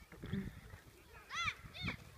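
Two short, high-pitched shouts from children playing football, about a second and a half in and again just before the end, over faint outdoor background noise with a low thump near the start.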